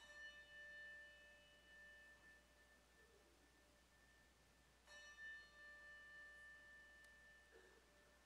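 A bell struck twice, about five seconds apart, each stroke ringing clear and slowly fading; faint.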